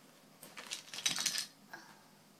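Zipper on a small fabric toy case being pulled, a quick rasping run of ticks lasting about a second, with a brief bit more just after.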